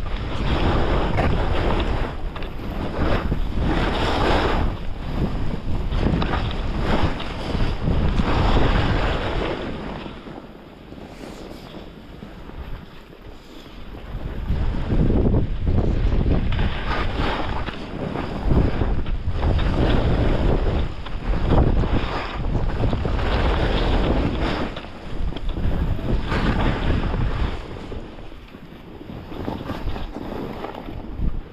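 Wind buffeting the camera's microphone during a downhill ski run, with the hiss of skis sliding through snow swelling and fading every second or two with the turns. It drops away twice, about a third of the way in and again near the end, as the skier slows.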